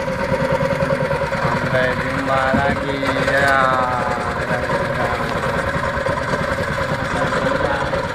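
Engine of a small wooden outrigger boat running steadily at low speed, with a constant low drone and even pulsing.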